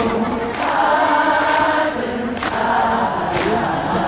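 Many voices singing together in chorus over live band music with regular drum hits, in a break between the lead singer's lines.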